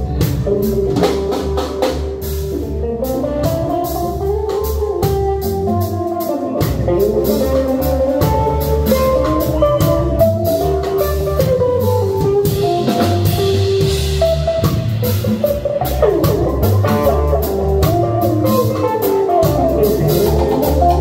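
A live Latin jazz-rock band playing loudly: electric bass and drum kit keep a driving rhythm under a lead melody that keeps moving up and down.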